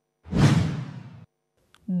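A whoosh transition sound effect between news items: one swoosh of about a second that starts suddenly and fades out.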